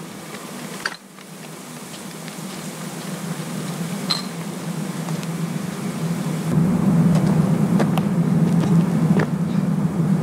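A steady low mechanical hum, growing louder and loudest from about two-thirds of the way through, with a few faint clicks.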